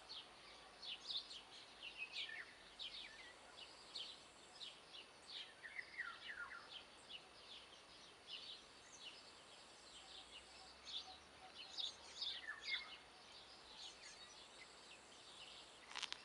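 Small birds chirping faintly, many short high chirps throughout, with a couple of longer downward-sliding calls.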